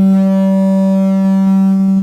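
Sound-system microphone feedback from a handheld mic through the PA: a loud, steady, low-pitched howl with a ring of overtones that cuts off suddenly at the end.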